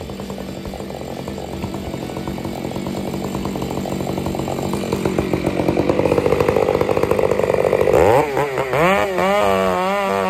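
Gas chainsaw running at idle and growing louder, then revved up about eight seconds in and cutting into a spruce stump, its pitch wavering up and down under load.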